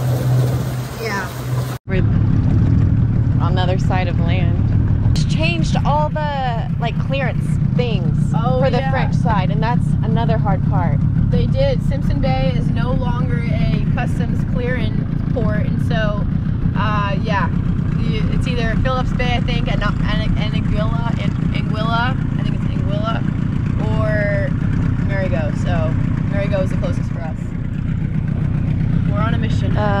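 A boat engine running steadily as a low drone, under people talking indistinctly throughout. A bit of music ends with a sudden cut about two seconds in.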